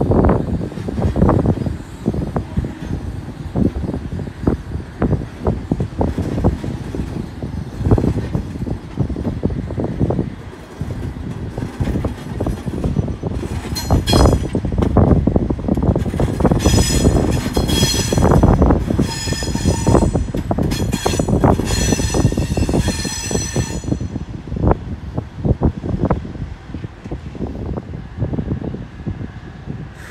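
Double-deck electric suburban train rolling slowly over the station's tracks and points, its wheels clattering and thudding unevenly on the rail joints. From about halfway through, the wheels squeal in high ringing bursts for several seconds, as they do on tight curves through points.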